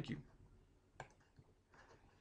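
A single computer mouse click about a second in, against near silence.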